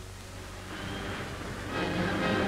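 Newsreel background music: sustained tones that swell and grow louder through the second half, over a low steady hum in the soundtrack.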